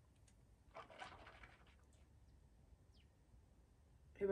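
Near silence in a small room, with a faint short sip of red wine from a glass about a second in.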